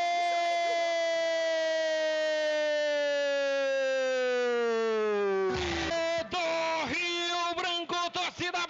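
A Brazilian football commentator's long drawn-out goal cry, "gooool", held in one unbroken high shout for about five and a half seconds and sliding slowly down in pitch. It then breaks into rapid excited shouted words.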